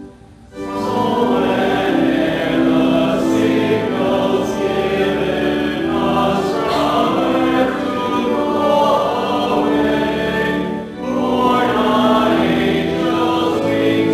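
A hymn sung by a group of voices with organ accompaniment, in long held notes. The singing drops out briefly just after the start and again about eleven seconds in, between phrases.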